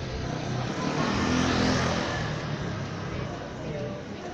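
A motor vehicle passing close by on a city street. Its engine and tyre noise swells to a peak about a second and a half in, then fades away.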